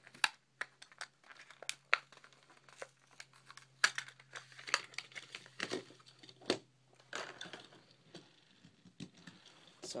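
Clear plastic blister of a carded Matchbox die-cast car being pried and peeled off its cardboard backing by hand: irregular crinkling of the plastic with sharp crackles and snaps.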